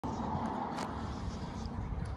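Steady low outdoor rumble.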